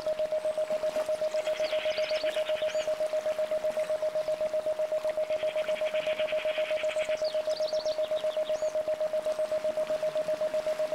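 An isochronic tone, one steady pure pitch switched on and off about eight times a second in a 7.83 Hz Schumann-frequency pulse. Underneath it, birds chirp, with two bursts of rapid trilling about a second and a half in and again about five seconds in.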